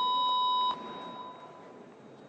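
A steady electronic beep tone, a single held pitch with fainter higher tones above it, cuts off suddenly under a second in. Only a faint hiss follows.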